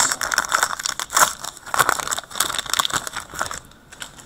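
Foil hockey card pack wrapper being crinkled and torn open by hand: a quick, irregular run of crackles that dies away just before the end.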